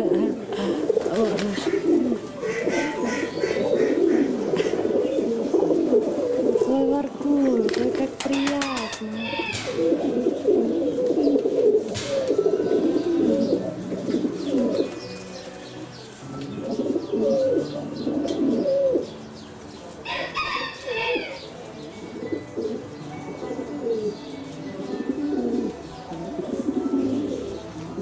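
Several domestic pigeons cooing, their low warbling coos overlapping almost without pause.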